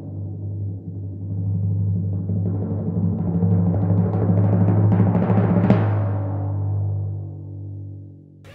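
Timpani roll, a drumroll sound effect that builds up to a sharp stroke near six seconds in, then rings away.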